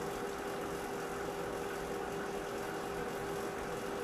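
Steady background hum with a constant mid-pitched tone over a faint hiss.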